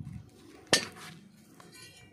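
Pieces of a broken cast-metal chaff-cutter gear wheel clinking against each other and the concrete floor as they are handled and set down, with one sharp clink about three-quarters of a second in that rings briefly.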